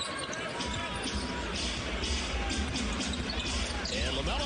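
A basketball being dribbled on a hardwood court over steady arena crowd noise, with a low crowd rumble coming up about half a second in.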